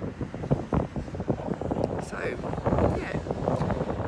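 Wind buffeting a phone's microphone in uneven low gusts, with a woman's voice heard briefly.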